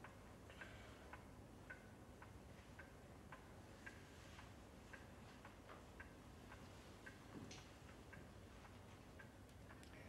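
A clock ticking steadily and faintly, about two ticks a second, over a low background hiss.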